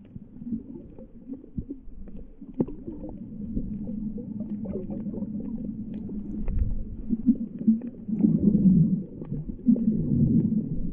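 Muffled underwater sound picked up by a GoPro camera below the surface: a low rumble of moving water with scattered small clicks, swelling louder near the end.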